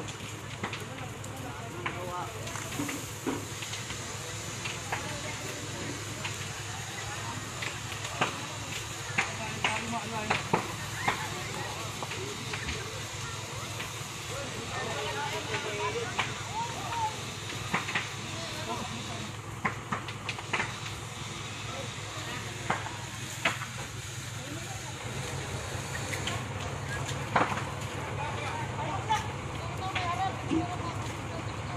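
A large warehouse fire burning: irregular sharp cracks and pops over a steady rushing noise, with the pops coming thickest about a third of the way in and again near the end.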